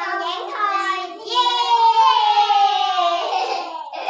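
Young girls' voices calling out together in one long, loud held cry that slides down in pitch, as in a cheer.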